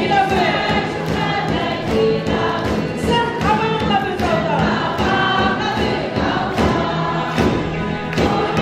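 A congregation singing a worship song together over a steady beat.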